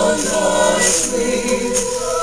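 Small mixed-voice vocal ensemble of seven high-school singers singing Christmas music in several-part harmony.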